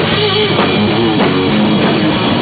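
A rock band playing live at full volume: distorted electric guitar over a drum kit.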